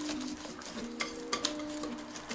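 A wire whisk beating cake batter in an enamel bowl: a steady wet scraping as the wires stir through the batter, with a few sharp clicks in the second half as they strike the bowl.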